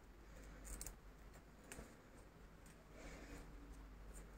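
Near silence with a few faint clicks and light rustling: small scissors being handled and snipping at the ribbon loop of a cross-stitched figure.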